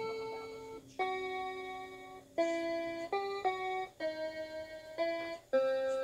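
Electronic keyboard playing a slow single-note melody, each note held about half a second to a second with short breaks between, over a low sustained note. The player goes wrong in the tune.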